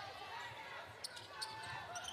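Basketball dribbled on a hardwood court in a large hall, a few sharp bounces near the middle, with faint players' voices and court noise around it.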